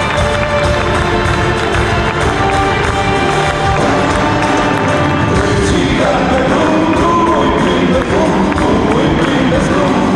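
Live folk-rock band playing at full volume, drums keeping a steady beat under acoustic guitar and keyboards, with an audience cheering along. A singing voice comes in about six seconds in.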